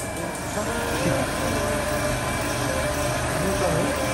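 A steady machine hum with a few constant tones running under it, and faint voices near the end.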